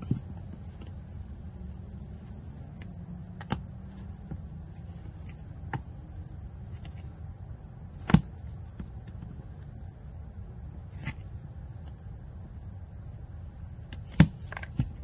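Crickets chirping in a steady high trill over a low hum, with a few sharp clicks, the loudest about eight seconds in, as a razor blade cuts through a plastic fog-light blank.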